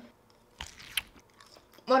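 Someone chewing a mouthful of salad, with a couple of short crisp crunches about halfway through.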